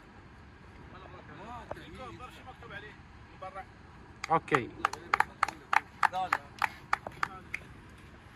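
Low chatter from a small group, then about four seconds in a shout and scattered clapping from a few people, sharp separate claps for about three seconds.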